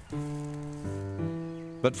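Background music of held, sustained chords that change twice, with a narrator's voice starting near the end.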